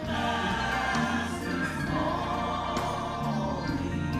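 Church choir singing a gospel song with instrumental accompaniment, held steady throughout.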